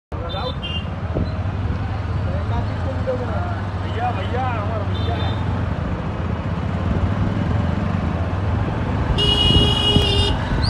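Road traffic heard from a moving vehicle: a steady low rumble of engines and tyres, with short horn beeps near the start and about five seconds in. A longer, louder horn blast comes about nine seconds in. Voices are heard briefly over the traffic.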